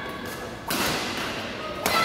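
Badminton racket strings hitting a shuttlecock twice in a rally, about a second apart, each a sharp crack with a short echo in a large hall.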